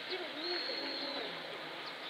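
Birds calling over a steady outdoor hiss, with short wavering low notes and one thin high note held for about a second, starting about half a second in.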